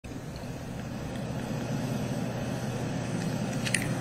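Steady low outdoor rumble, like distant traffic, with no tune or voice in it, slowly growing louder; a couple of faint clicks near the end.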